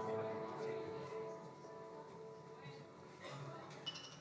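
Electronic music: sustained, steady chord tones that fade away over the first second or two, leaving the rest faint.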